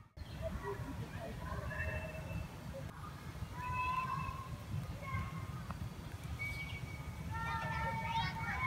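Faint, distant children's voices chattering and calling, clearest near the end, over a steady low rumble on the microphone.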